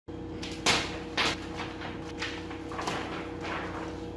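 Plastic bags and paper rustling and crinkling as bagged shirts are handled at a cardboard box: several short bursts, the loudest just over half a second in and another just after a second in, over a steady hum.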